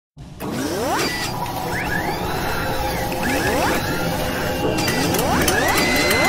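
Sound effects for an animated mechanical logo intro: rising whooshes about every two seconds over a bed of mechanical clicking and ratcheting, with a held tone coming in near the end.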